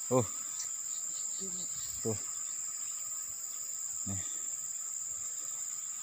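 Steady, high-pitched chorus of insects droning without a break in tropical hillside vegetation.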